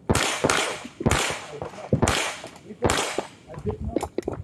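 GSG Firefly .22 LR pistol with a muzzle brake firing CCI Mini-Mag rounds: about five sharp shots at an uneven pace over three seconds, each with a short echo.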